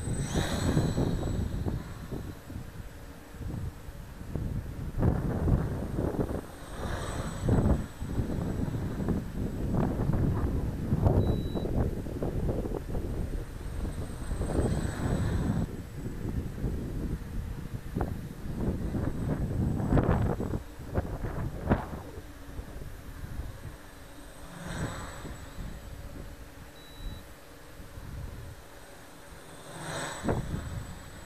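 Small quadcopter's electric motors and propellers whining, swelling as it sweeps close past the microphone several times, under heavy gusty wind buffeting on the microphone.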